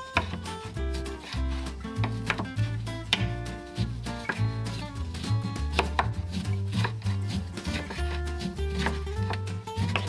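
A chef's knife slicing through an orange and then a lemon onto a bamboo cutting board, a crisp knock against the board with each cut, roughly once a second, over background music.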